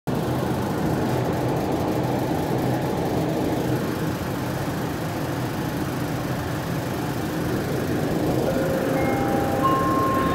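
Inside a 1984 UTDC Mark I SkyTrain car: the steady rumble and hum of the train running. Near the end, steady electric whining tones come in one after another, each higher in pitch than the last.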